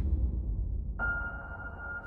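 Cinematic soundtrack: a deep, low boom fading away, joined about a second in by a single steady high tone.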